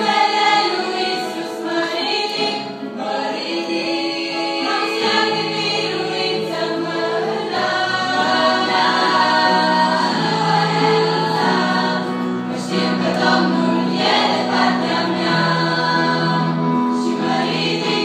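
Girls' choir singing a Christian hymn in several parts, with long held notes; lower sustained notes join about five seconds in.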